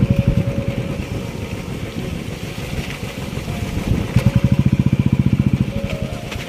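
A small engine running close by, with a rapid, even throb that swells and eases.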